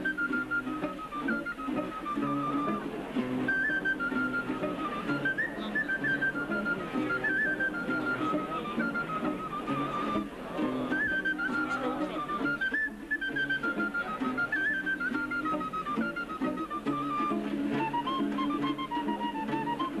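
Instrumental music: a single high melody line that rises and falls with small ornaments, over low held notes.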